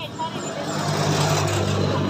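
A motor vehicle going past close by: an engine hum under a rush of road noise that swells just after the start and then holds steady.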